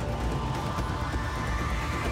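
Dramatic news-channel theme music with a heavy low end and a tone that rises steadily in pitch.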